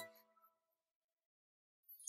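Near silence: a music cue has just stopped, and its last faint notes die away within the first second.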